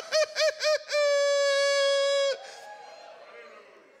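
A man laughing in a high falsetto: four quick "ha" bursts, then one long held note of about a second and a half, trailing off after it.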